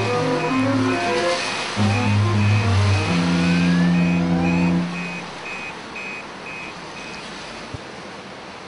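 Background music with a deep bass line that stops about five seconds in, over street traffic with cars driving past. A short high beep repeats about twice a second through most of it.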